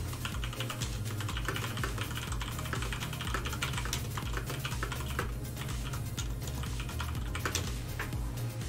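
Rapid typing on a computer keyboard, a dense run of key clicks, over background music with a steady low beat.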